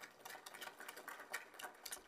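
Faint light applause from a small seated audience: many quick, irregular hand claps.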